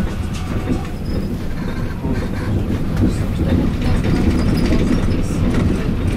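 Moving tram heard from inside the passenger car: a steady low rumble from wheels on rails, with scattered small clicks and rattles.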